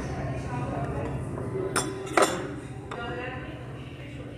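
Tableware clinking at a restaurant table: two sharp clinks about two seconds in, then a lighter one, over a background murmur of voices.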